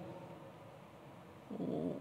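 A pause in a man's speech with low room tone, then a short low, rough throat sound from the speaker about one and a half seconds in, just before his next words.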